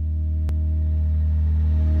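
Pop-punk song played backwards: a held low chord swells steadily louder, its decay reversed. There is a single sharp click about half a second in.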